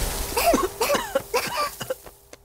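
Cartoon voices coughing in the smoke: a quick run of short voiced coughs, about seven or eight in under two seconds, over a faint steady tone.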